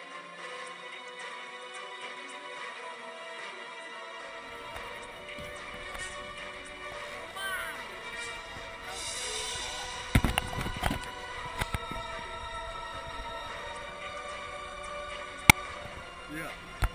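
Background music laid over the footage, with a few sharp thumps around the middle and a louder one near the end.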